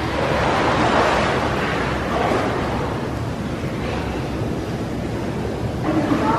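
Pool water splashing and lapping around a swimmer standing in an indoor swimming pool. It is a steady rush of water noise that swells about a second in.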